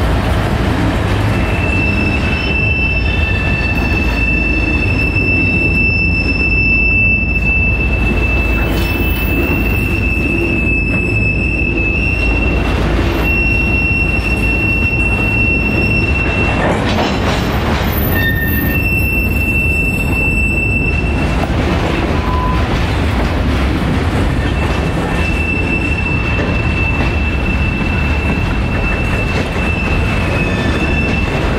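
Freight train of boxcars and covered hoppers rolling slowly past, with a steady low rumble and a high-pitched squeal from the steel wheels that holds for long stretches and drops out twice.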